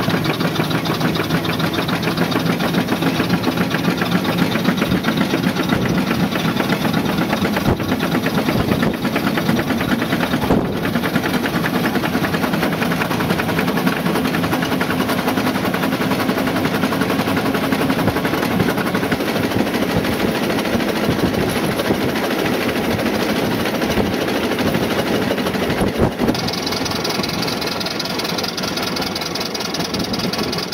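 1911 Stanley Steamer under way on the road: its two-cylinder steam engine running with a fast, even beat under road and wind noise. Near the end a brief knock is heard, then a higher hiss joins in.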